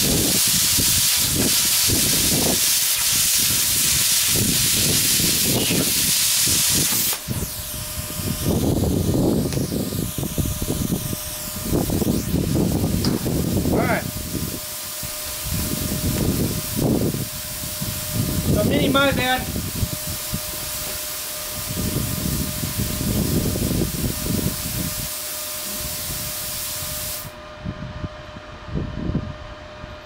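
Titanium Plasma 45 plasma cutter cutting eighth-inch steel at 32 amps: a loud, steady hiss of the arc and compressed air for about the first seven seconds. After the arc stops, a quieter hiss of air keeps flowing through the torch until it cuts off suddenly near the end, among scattered knocks and thumps of handling.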